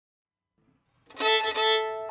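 Fiddle music: a bowed fiddle starts about a second in and holds one steady note, with a brief break in the middle.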